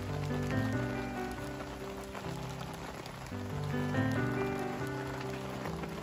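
Background music: a slow melody of held notes over a steady bass line, with a faint scattered ticking underneath.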